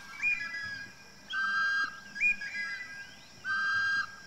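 Bird whistling in a repeating pattern: a short rising note, then about a second later a steady held note of about half a second, the pair coming round about every two seconds.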